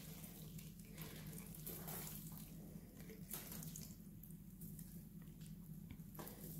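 Faint rustle of a damp potting-soil root ball being handled and turned in the hands, over a low steady hum.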